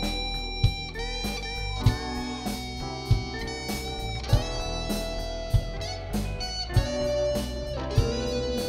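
Live rock band playing the instrumental break of a slow power ballad: held electric guitar notes over keyboard, bass and drums, with a drum hit about every second and a quarter.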